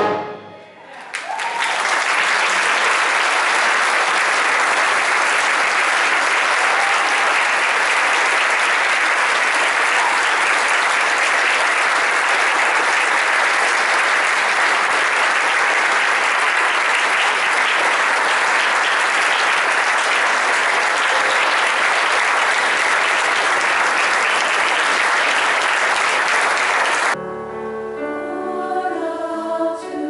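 Audience applauding steadily for about 26 seconds after a brass band piece ends. Near the end the applause cuts off and a mixed choir begins singing.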